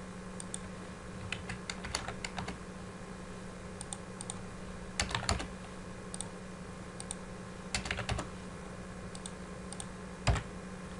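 Computer keyboard typing: short clusters of keystrokes with pauses between them, as a URL is typed into a browser address bar. A steady low hum runs underneath.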